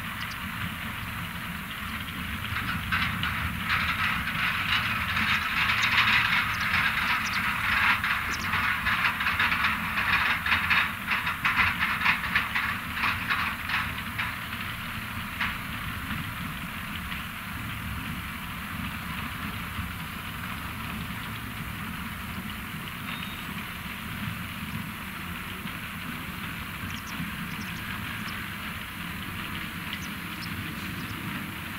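ROPA Maus 5 sugar-beet cleaning loader at work: a steady engine drone under a continuous rattle and clatter of beets tumbling through the pickup and up the conveyor boom into a truck. The clatter swells for about the first half and then eases back to a steadier level.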